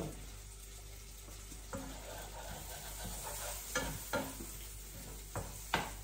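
Chopped tomatoes frying quietly in a frying pan, with a few light knocks and taps as the pieces are moved about in the pan.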